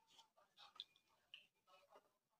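Near silence with a handful of faint, short clicks and rustles from hands handling a thin stainless-steel corona wire for a copier charger.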